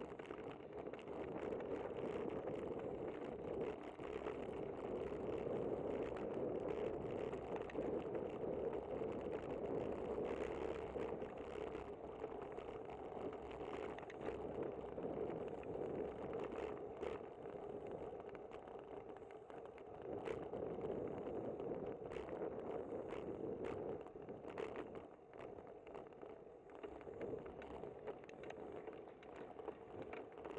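Muffled road and wind noise of a bicycle in motion, picked up by a bike-mounted camera, with scattered sharp clicks and rattles from bumps in the pavement.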